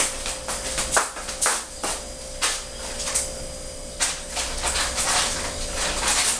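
Irregular clicks and rustles of utensils being handled while a piping tip is picked out, over a steady faint hum.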